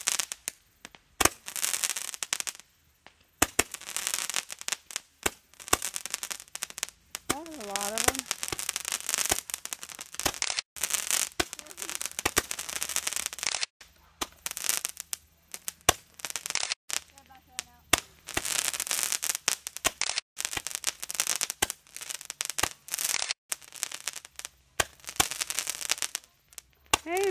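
Small handheld aerial firework, roman-candle type, firing a string of shots: about a dozen hissing bursts with sharp cracks, one every second or two.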